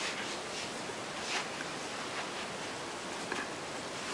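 A few faint, soft rustles of a makeup sponge rubbed over the skin of the face in circular strokes, over steady room hiss.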